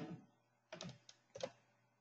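A few faint keystrokes on a computer keyboard, in two short clusters about a second in.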